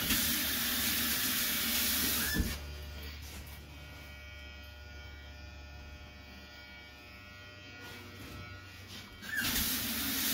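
Handheld hair dryer blowing in two short blasts of about two seconds each, one at the start and one near the end, each switching on and off with a brief whine as the motor spins up and down. A steady low hum continues between the blasts.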